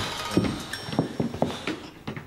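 A quick, uneven series of about eight light knocks over two seconds, fading toward the end.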